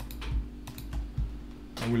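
Computer keyboard keys being pressed: a few separate clicks at uneven intervals.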